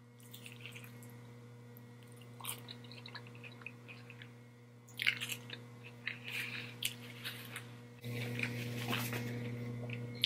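Close-up chewing of a lettuce-wrapped burger: faint, wet, crunchy mouth sounds and small clicks, with a louder burst of chewing about five seconds in. A steady low hum runs underneath and steps up in level about eight seconds in.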